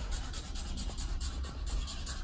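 Felt-tip marker rubbing on paper in quick repeated back-and-forth strokes, shading in a line on a drawn number line.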